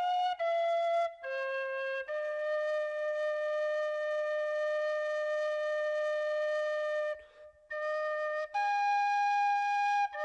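Solo flute-like woodwind melody in recorded music: a few short notes, then one long held note of about five seconds, a brief break, and a higher held note.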